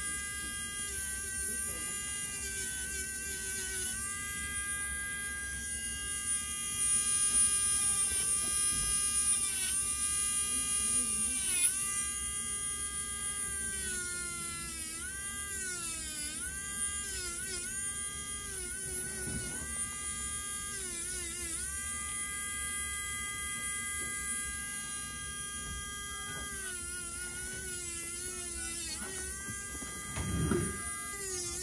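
Podiatry rotary nail drill with a cone-shaped burr whining at a steady high pitch while grinding down a thickened great toenail. The pitch dips and wavers many times as the burr bears against the nail plate, with a louder stretch of grinding between about six and twelve seconds in.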